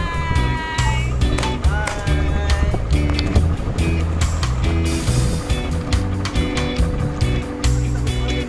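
Background music with a steady beat, held bass notes and a melody over them.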